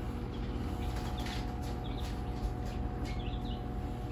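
A few faint, short bird chirps over a steady low hum and rumble, with soft scattered clicks.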